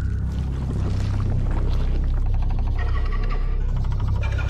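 Deep, steady low rumble from an animated film's soundtrack, an ominous drone with faint higher tones coming in near the end.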